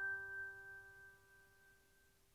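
The final chord of a piano outro tune ringing out and fading away, dying to near silence about a second and a half in.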